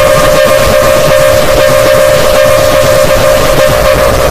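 A loud, heavily distorted electronic tone held on one pitch over harsh crackling noise: a logo's sound effect altered by audio-effect processing. It cuts off at the end.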